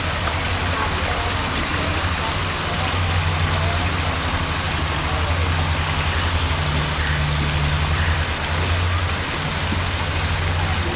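Small waterfall splashing steadily over rocks, with a steady low hum underneath.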